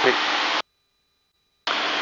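Super Cub cockpit noise, engine and wind, heard through the pilot's headset microphone as a steady hiss. It cuts off suddenly about half a second in and switches back on near the end, the way an intercom's voice-activated squelch closes and reopens around speech.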